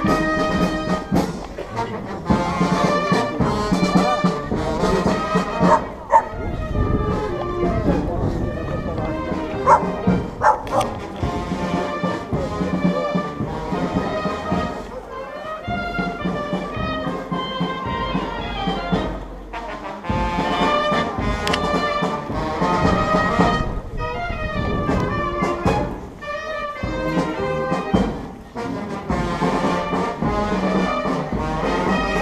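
A brass band playing music, with people's voices mixed in.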